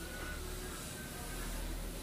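Steady hiss of a hot-air rework station blowing onto a phone circuit board to melt the solder holding a USB-C charging connector, over a low hum.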